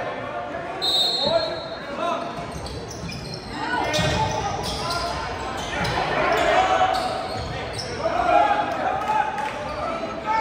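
A basketball game in an echoing gym: a short, steady high whistle about a second in, voices calling and shouting from players and crowd, and a basketball bouncing on the hardwood floor.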